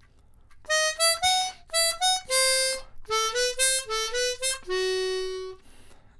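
Hohner chromatic harmonica playing a quick jazz phrase of short notes, with a longer note midway, ending on a held lower note that cuts off about half a second before speech resumes.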